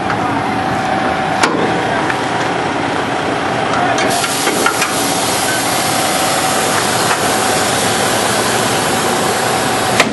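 Engine running steadily with a constant whine over it, and a few sharp knocks.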